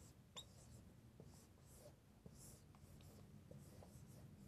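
Faint strokes of a dry-erase marker writing on a whiteboard: a few short, quiet scratches and squeaks as numbers are written and boxed.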